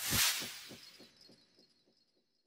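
Editing sound effect for a title card: a swoosh that swells to a hit about a quarter second in, then echoes away in a string of quick repeating pulses with a faint high ringing tone, gone by about a second and a half.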